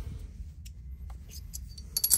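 Quiet handling noise over a low room hum: a few faint light clicks and taps as a pistol is picked up and brought toward a digital scale, with a sharper click of hard plastic and metal near the end.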